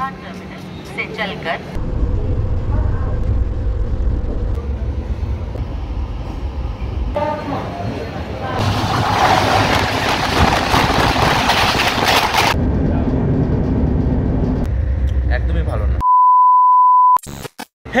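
Passenger trains running with a low rumble; in the middle, a loud rush of noise lasts about four seconds as two trains pass close alongside each other at speed. Near the end, a steady electronic beep lasts about a second.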